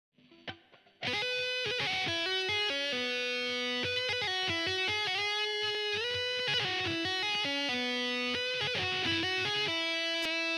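Electric guitar with distortion playing a fast legato solo line, largely by two-handed tapping on the neck, the notes sustaining and running into one another with a few slides in pitch. It comes in suddenly about a second in, after a faint click.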